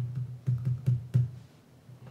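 Computer keyboard being typed on: about six quick keystrokes in the first second or so, then a pause, over a steady low hum.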